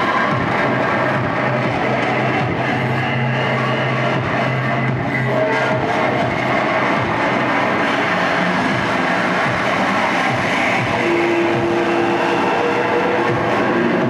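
Live harsh noise music from a board of effects pedals: a loud, unbroken wall of distorted electronic noise, with held droning pitches coming and going underneath it.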